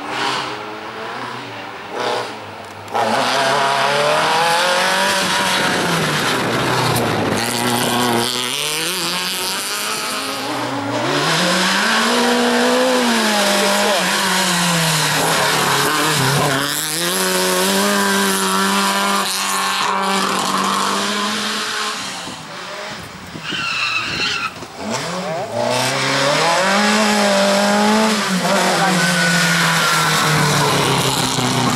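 Peugeot 205 race car's engine revving hard, climbing and dropping in pitch over and over as it accelerates and slows between slalom cones. A short tyre squeal comes through about two-thirds of the way in.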